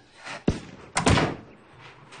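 A door slammed shut: a sharp knock about half a second in, then a louder bang with a short ring about a second in.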